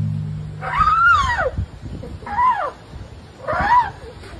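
A drum's low ring fading out, then an Asian elephant giving three high calls, each rising and then falling in pitch, the middle one shortest.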